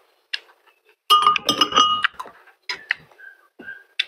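Metal fork and spoon clinking against the dishes while serving noodles. A cluster of sharp, ringing clinks comes about a second in, followed by a few lighter taps.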